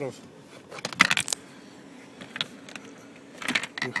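Sharp clicks and light clinks as the plastic footwell trim panel is handled and set in place, a quick cluster about a second in and a few more near the end.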